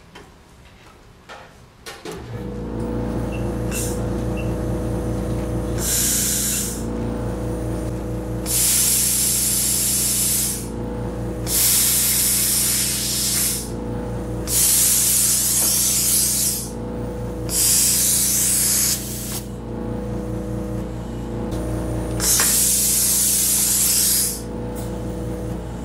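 An air vending machine's electric compressor starts about two seconds in and runs with a steady hum. Over it, compressed air hisses from the air hose in repeated bursts of one to two seconds.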